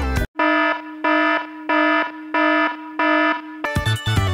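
Electronic alarm beeping five times, about one and a half beeps a second, over a steady low hum. Music stops just after the start and comes back near the end.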